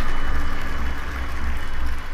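Intro sound effect: a loud, deep rumble with a hiss over it, pulsing slightly.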